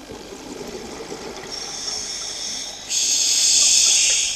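A hiss that comes in faintly about one and a half seconds in and turns much louder about three seconds in.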